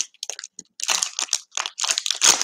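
Plastic wrapper of a baseball-card fat pack crinkling as it is peeled open and pulled off the stack of cards. The crinkling comes in short, irregular bursts with brief gaps between them.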